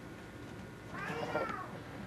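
A single meow from a house cat, about a second in, rising then falling in pitch.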